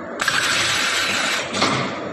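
Film wrapping and heat-shrink packaging machine running: a sudden hiss lasting a little over a second, cut off sharply and followed by a click.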